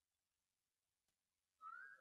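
Near silence, with a faint, short rising whistle-like tone near the end.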